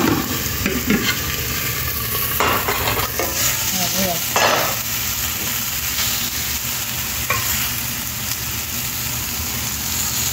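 Chicken drumsticks frying in hot oil in a steel pan, with a steady sizzle. A few short clicks and scrapes from tongs or a utensil against the pans are heard scattered through it.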